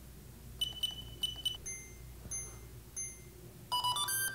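Electronic beep tones from a SteadyMaker SMG Evo 3-axis handheld gimbal stabilizer, signalling its switch into calibration mode after four quick presses of its front button: two higher beeps, then three short lower beeps about 0.6 s apart, then a quick run of several tones near the end.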